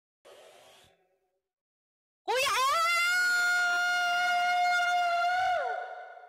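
A woman's voice singing one long high note: it scoops up into the pitch, holds steady for about three seconds, then slides down and fades.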